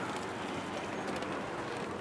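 Steady street noise of a busy harbour town, an even hiss with faint light clicks.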